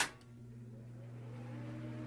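Logo-animation sound effect: a sharp hit at the start, then a low, steady hum with a few held tones that slowly swells.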